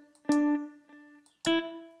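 Single notes from a sampled electric-guitar patch (Brighter Humbucker AC15) auditioned one at a time in a piano roll: a note struck about a third of a second in that rings and fades, then a slightly higher note near the end.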